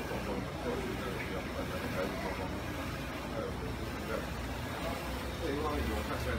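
Indistinct talking in a crowded press scrum, voices blurred together over a steady low background rumble.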